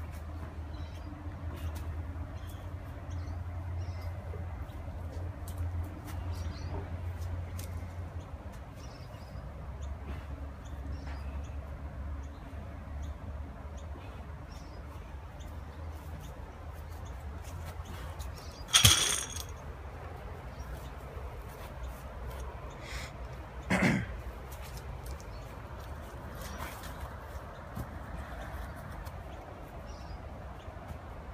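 Outdoor ambience of a steady low rumble with faint high chirps. Partway through come two sharp knocks about five seconds apart; the first is much louder, with a brief ring.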